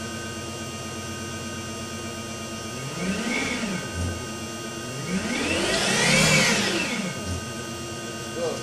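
Electric drive motor of a BMW 840Ci EV conversion turning the rear wheel through its ZF 5HP24 automatic gearbox in reverse, the car raised with the wheel spinning free. A whine rises and falls in pitch twice with the throttle, briefly about three seconds in, then longer and louder from about five to seven seconds, over a steady hum.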